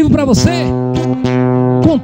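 Live acoustic guitar accompaniment with a man singing into a microphone. He holds long notes, with pitch bends at the start and near the end.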